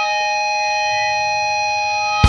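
Electric guitar amplifier feedback: a steady, high-pitched whine of several held tones, with no drums or picking under it.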